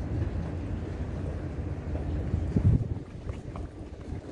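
Outdoor wind buffeting the microphone: an uneven low rumble with a louder gust about two and a half seconds in.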